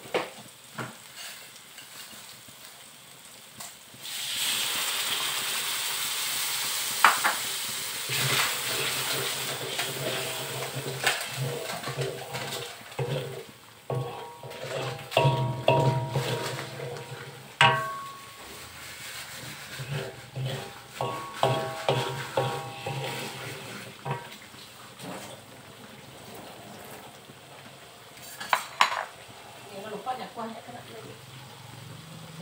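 Curry paste sizzling in a wok, stirred with a wooden spatula that scrapes and knocks against the pan. The sizzle grows louder about four seconds in, and the stirring strokes come thickest in the middle.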